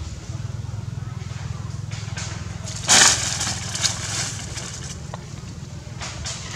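A sudden loud crackling of dry leaves and twigs about three seconds in, lasting about a second, over a steady low engine-like hum.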